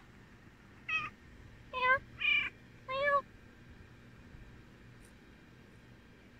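A silver tabby domestic shorthair cat gives four short meows in quick succession, from about a second in to about three seconds in.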